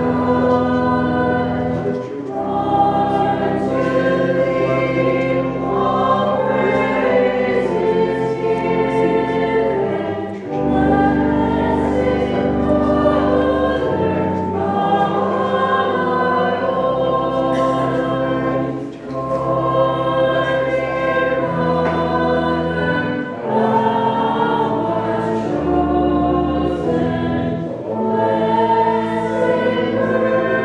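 Choir singing a slow hymn at Mass, sustained chords changing every second or two over steady low notes.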